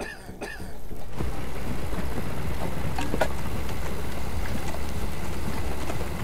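A WWII half-track driving: a low, steady engine rumble with a haze of track and running-gear noise, building up about a second in, with a few sharp clanks in the middle.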